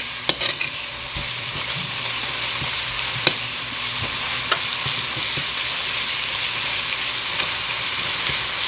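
Grated garlic frying in vegetable oil in a pot: a steady sizzle, stirred with a spoon that clicks against the pot a few times.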